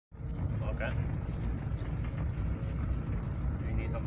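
Steady low rumble of a car's engine and tyres heard from inside the cabin while driving, with brief voices.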